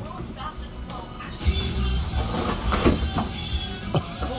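A television playing music and talk in the background, with short scraping and tearing sounds of cardboard as a dog digs its head into a large shipping box.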